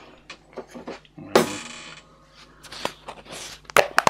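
Plastic tub of grit and sand being picked up and handled on a desk: a loud knock with a short ringing tail about a second in, small clicks, and two sharp clacks near the end.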